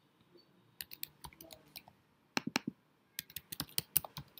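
Typing on a computer keyboard: irregular keystroke clicks in short runs, starting just under a second in.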